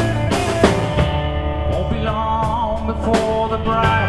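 Live rock band playing, with drum kit hits over sustained guitar and bass parts and a bending guitar note midway.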